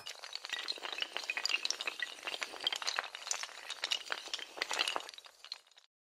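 Sound effect of a long chain of dominoes toppling: a dense, rapid clatter of small clicks that stops abruptly near the end.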